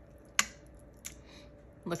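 A metal fork clicking against a stainless steel pressure-cooker pot while pulling apart tender stewed beef: one sharp click about half a second in and a fainter one about a second in.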